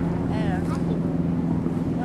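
Boat engine idling with a steady low hum, with voices talking close by.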